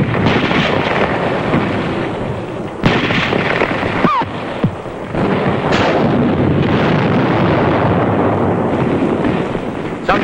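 Battle sound of explosions and gunfire: a continuous heavy rumble with sharp blasts about three seconds in and again near six seconds, and a short falling whine about four seconds in.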